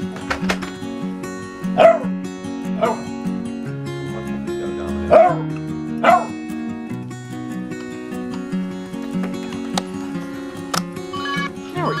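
Background music playing steadily over two dogs at play, one giving about four short barks.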